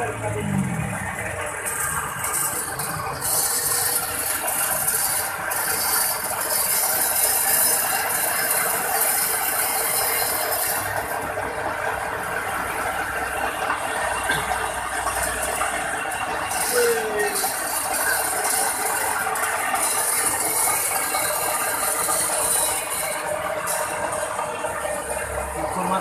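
Electric coffee grinding machine running under load, grinding roasted coffee beans with a continuous dense rattling grind as the powder pours from its spout. A harsher hiss swells and fades twice.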